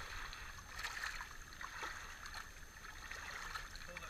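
Shallow water washing and trickling over shoreline rocks, a low steady hiss.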